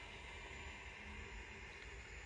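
Faint steady room tone: a low, even hiss with no distinct sounds.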